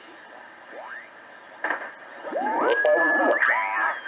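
BITX40 single-sideband transceiver receiving 40-meter amateur radio signals through its speaker while it is being tuned: a rising whistle about a second in, then garbled, off-tune voices that warble in pitch, with a steady heterodyne whistle starting near the end.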